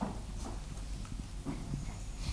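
Quiet room tone with a few faint knocks and clicks spread through it.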